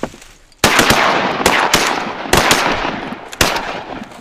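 Waterfowl hunters' shotguns fired in a rapid volley at geese, about seven to nine sharp blasts in loose pairs over some three seconds, starting about half a second in.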